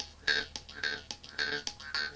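Jaw harp (vargan) played with rhythmic plucks, about four a second, over a steady low drone, with bright ringing overtones shaped by the mouth.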